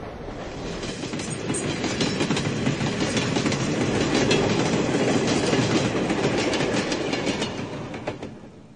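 A train running along the rails, its wheels clacking over the rail joints. It grows louder over the first few seconds and fades away near the end.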